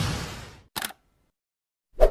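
Sound effects of an animated logo intro: a whoosh fading out in the first half second, a short sharp click just under a second in, then silence and a low thump at the very end.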